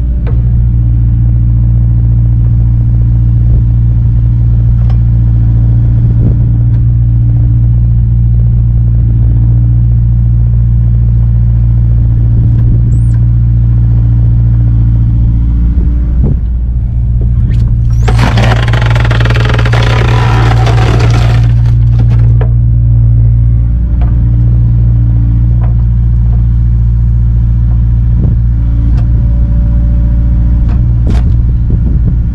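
Kubota KX057-4 excavator's diesel engine running steadily under hydraulic load while its log-splitter attachment grabs and positions a log. About two thirds of the way through, a loud rushing noise of about three seconds rises over the engine.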